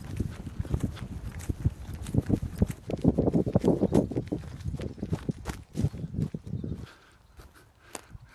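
Footsteps walking across grass and onto wood chips, an irregular run of muffled thumps that stops about seven seconds in.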